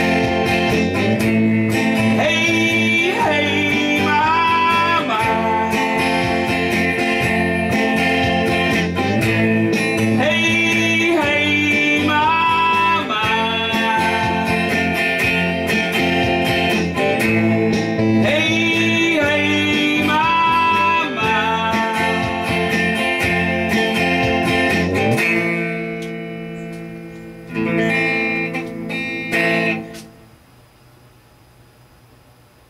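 Electric guitar strummed with a man singing along, a bluesy rock song. About 25 seconds in the playing stops and the chord rings out, then one last strum dies away near the end as the song finishes.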